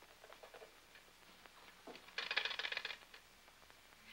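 Desk telephone being taken up and worked: a quick run of fast metallic clicks lasting under a second, about two seconds in. Before it come a few faint soft clicks.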